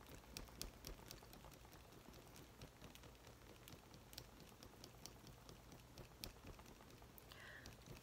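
Near silence: quiet room tone with a faint low hum and faint, scattered small clicks.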